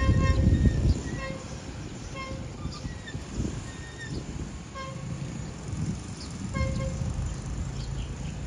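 Horn of an approaching QSY diesel-electric locomotive sounding a series of short toots, the first about a second long, over a low rumble that is loudest in the first second.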